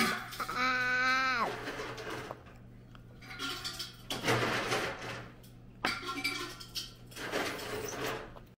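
A toddler's drawn-out vocal sound, held on one pitch for about a second and dropping at the end, followed by breathy mouth and handling noises.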